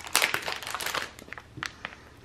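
Clear plastic packaging of a wax melt crinkling as it is handled and opened, in a dense run of small crackles over about the first second, followed by a few faint isolated taps.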